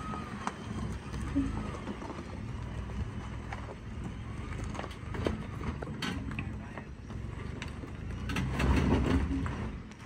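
A pickup truck crawling slowly over a rocky trail: a low engine rumble with tyres crunching and knocking on loose stones. It gets louder near the end as the truck climbs over the rocks.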